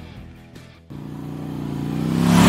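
Outro music fades out, then about a second in a motor-vehicle engine sound effect cuts in and builds steadily louder for a logo sting.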